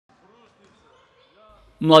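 Faint sound of a basketball game in an echoing gym: a ball dribbled on the wooden court, with distant voices. It is cut off near the end by a man's voice starting loudly.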